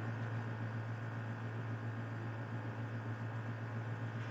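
Steady low hum with a faint hiss underneath: room background noise, with no distinct event.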